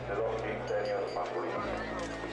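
Indistinct voices over a public-address or crowd background, with low sustained tones underneath that change pitch about one and a half seconds in.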